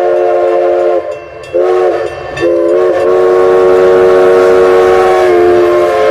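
Steam locomotive whistle blowing in steady blasts: one ending about a second in, a short blast, then a long blast held to the end.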